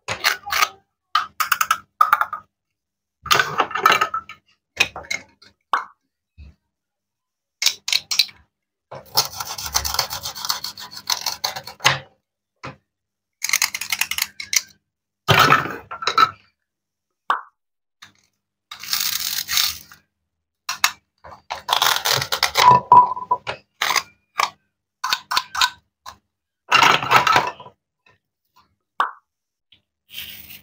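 Toy plastic and wooden play-food pieces handled by hand: short bursts of clicking, knocking and clattering as pieces are pulled apart, set down on a wooden cutting board and rummaged in a wooden crate, with quiet gaps between. A longer run of clatter comes about a third of the way in.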